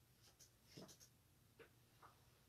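Near silence with a few faint, brief rustles, about a second in and again shortly after: the pages of a prayer book being turned.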